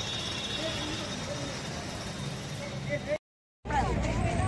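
Busy street background: steady traffic noise with faint voices in the distance. About three seconds in, the sound cuts out completely for half a second, then returns with voices nearer by.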